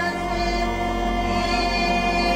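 Choir singing long held chords over orchestral accompaniment, in a contemporary orchestral piece drawing on Toraja ethnic music.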